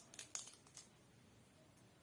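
Near silence, with a few faint, short crackles in the first second as the sepals are torn off a fresh flower by hand.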